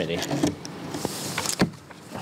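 Sheets of paper rustling and being handled on a table, with a few sharp taps, the loudest about a second and a half in.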